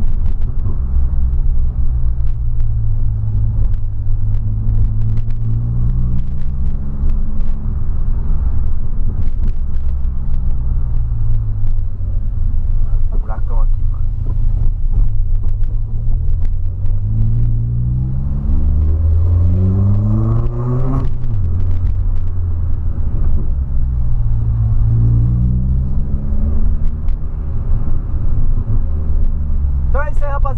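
Volkswagen Polo sedan's engine heard from inside the cabin while driving, its pitch rising and falling with speed and gears. In the second half it climbs steeply under acceleration, drops suddenly at a shift, then rises again.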